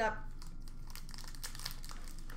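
Trading-card pack wrappers crinkling as they are handled, a dense run of small crackles.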